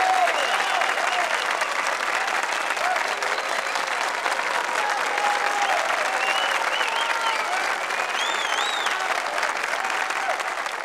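Audience applauding steadily, with a few voices calling out and cheering over the clapping.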